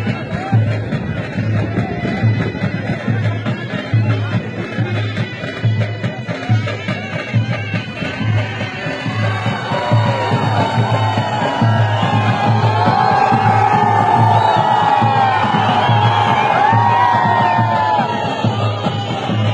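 Traditional music with a steady, regular drum beat. From about halfway through, a large crowd shouts and cheers over it, growing louder.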